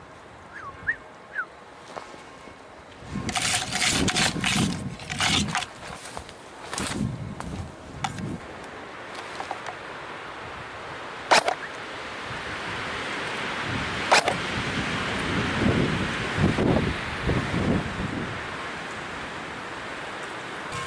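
Dry branches and scrub brushing and scraping against a person forcing through dense brush, with footsteps, in several bouts. Two sharp cracks stand out, a little past halfway and about three seconds later.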